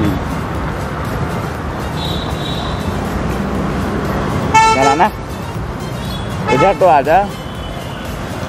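Steady roadside traffic as motorbikes and cars pass, with a vehicle horn honking briefly a little past halfway.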